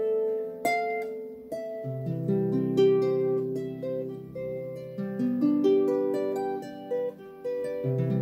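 Celtic harp playing a melody of single plucked notes that ring on, with low bass notes added underneath about two seconds in and again about five seconds in.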